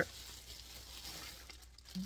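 Quiet room tone: a faint steady hiss with a low hum underneath.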